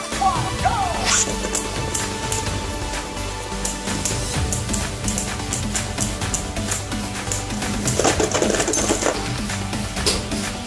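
Beyblade tops spinning and clashing in a plastic stadium, many sharp clicks of collision over background music. About eight seconds in comes a louder clash as one top bursts apart and a piece flies out.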